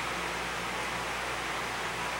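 Steady background hiss of room tone in a large room, even and unchanging, with no speech or distinct events.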